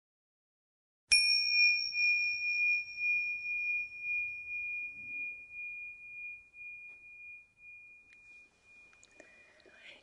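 A small bell struck once about a second in, giving a single clear high chime that rings on and fades slowly over about eight seconds.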